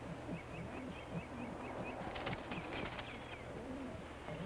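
A small bird calling: a quick run of short high chirps, several a second, over a string of low repeated notes, with a few faint clicks about two to three seconds in.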